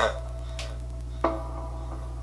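Quiet opening of a rap track playing back: soft held synth notes that shift to a new chord about a second in, over a steady low hum.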